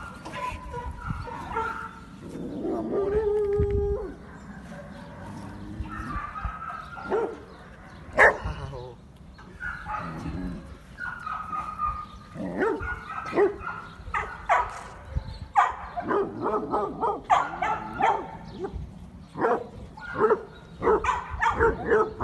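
Dogs barking and yipping in short, repeated calls, coming thicker and faster in the last few seconds.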